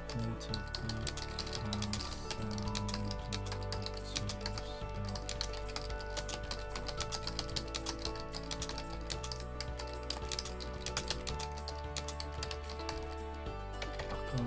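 Computer keyboard being typed fast, a dense, irregular stream of keystroke clicks, over background music.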